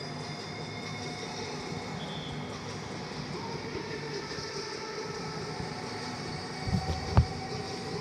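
Steady low background noise of a stadium picked up by open studio microphones, with a single low thump about seven seconds in.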